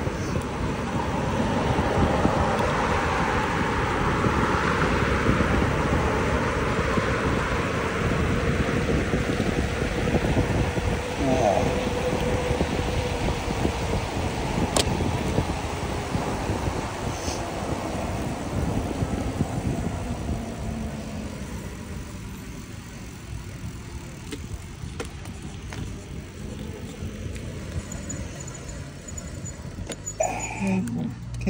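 Wind rushing over the microphone of a moving bicycle, with road traffic passing alongside. The rush eases after about two-thirds of the way through as the bike slows.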